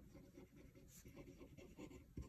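Faint scratching of a fine-tipped pen on paper as a word is written by hand in short strokes.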